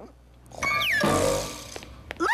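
A cartoon cat's loud screech, starting about half a second in and lasting about a second, with a falling whistle-like tone at its start.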